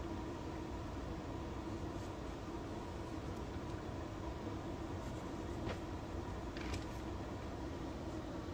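Steady room hum and hiss, with a few faint clicks and knocks from a semi-auto shotgun being handled and turned over, a little after halfway through.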